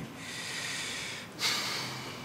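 A man's heavy, breathy sigh: a long breath, then a sharper, louder one about one and a half seconds in, the breathing of someone upset.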